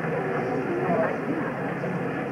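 Indistinct voices talking, too unclear to make out words.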